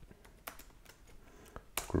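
Computer keyboard being typed on: a handful of separate, quiet key clicks spread over two seconds as a layer-group name is entered.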